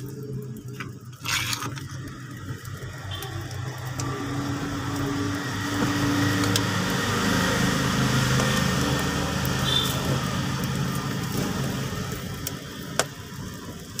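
A wood fire burning under a pot, with a few sharp crackles. Under it runs a steady, low engine-like hum that swells through the middle and fades toward the end.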